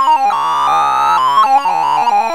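The Sound of Sorting's synthesized beeps sonifying an in-place MSD radix sort: a rapid run of electronic tones, each pitch set by the value of the array element being touched, stepping up and down. For about a second in the middle the tones merge into a smoother, slowly rising, siren-like pitch.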